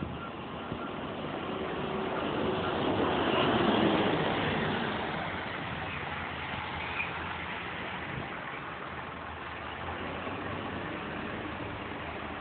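A small single-decker diesel bus drives past close by, its engine and tyres growing louder to a peak about four seconds in and then fading as it pulls away, leaving a steady hum of idling engines.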